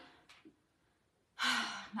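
A woman's breathy, audible sigh about a second and a half in, after a short pause.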